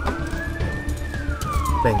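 Ambulance siren wailing, its pitch rising to a peak about halfway through and then falling again, over a steady low rumble.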